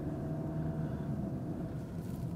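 Jeep Cherokee's 2.2-litre Multijet four-cylinder turbodiesel heard from inside the cabin while driving slowly: a steady low hum.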